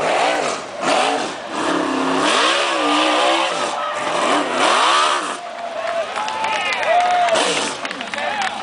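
Winged 360 sprint car V8 engine being revved, its pitch rising and falling again and again as the throttle is blipped, with a higher, steadier whine near the end.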